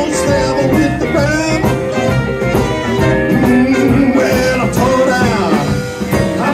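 Blues band playing live at full volume, a dense mix of electric guitar, keyboard, bass, drums and horns, with bent, sliding notes over the top.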